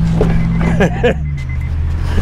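Car engine idling, a steady low hum, as the driver gets in, with a short burst of voices about halfway through and a laugh at the end.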